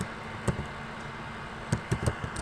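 Computer keyboard keystrokes: a single key click about a quarter of the way in and a quick pair of clicks near the end, over a steady background hum.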